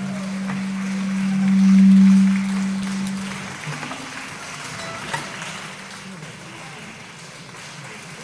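Applause, with a single long held low note that swells and then stops about three and a half seconds in; the clapping carries on alone and fades away.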